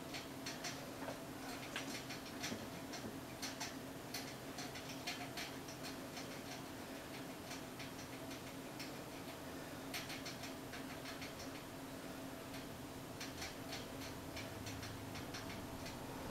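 A makeup brush stroked against the eyebrows: faint, irregular scratchy ticks that come in clusters, over a steady low hum.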